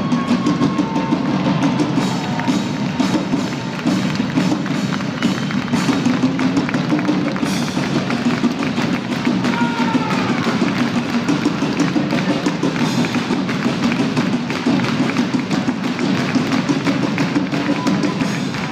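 Live amplified band music: a drum kit keeping a steady beat under bagpipes, played in a large hall.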